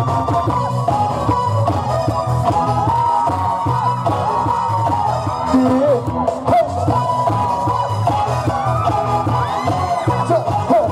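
Loud live band music with a steady beat playing through the concert sound system.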